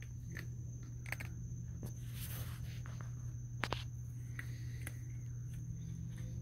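Quiet scattered clicks and crunches of a raccoon chewing food close by, with one sharper crack about three and a half seconds in. Underneath runs a steady low hum and a thin steady high tone.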